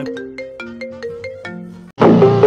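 iPhone ringtone playing for an incoming call: a quick run of bright, struck notes that cuts off abruptly just before the end, as the call is answered.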